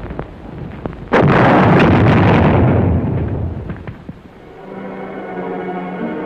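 Artillery shell explosion on a battle soundtrack: a sudden loud blast about a second in that rumbles and dies away over about two seconds, over low crackling battle noise. Music with held notes comes in near the end.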